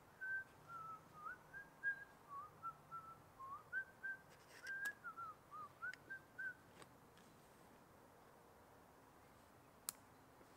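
A person whistling a tune, a run of short notes rising and falling for about six and a half seconds, then stopping. A few sharp clicks of gear being handled, one near the end.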